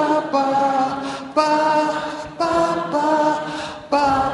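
A large audience singing the notes of a pentatonic scale together without accompaniment, a series of held notes about a second each, each new note starting sharply.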